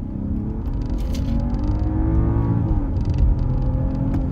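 A 2023 BMW 740i's turbocharged inline-six accelerating hard under the car's Boost function, heard from inside the cabin. The engine note climbs in pitch and grows louder, dips once about three seconds in, then pulls on over steady road rumble.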